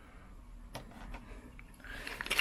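Faint handling of a plastic camera case, with a light click about a third of the way in and a couple of weaker ticks later.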